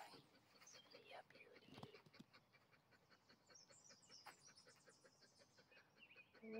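Near silence, with faint high bird chirps about halfway through and scattered faint clicks.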